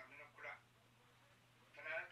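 Faint snatches of speech: a voice at the very start and again just before the end, with a near-silent pause between over a steady low hum.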